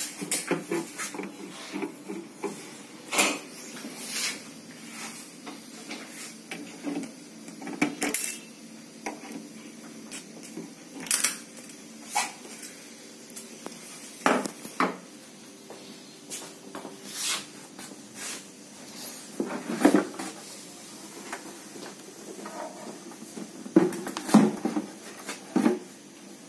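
Irregular clicks and knocks of a screwdriver and screws against the plastic housing of a visible spectrophotometer as its cover screws are taken out and the outer cover is taken off. The louder knocks come about two-thirds of the way in and near the end.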